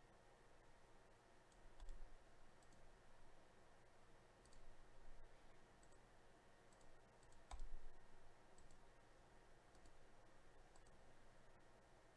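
Faint, scattered clicks of a computer mouse and keyboard over quiet room tone, the loudest about seven and a half seconds in.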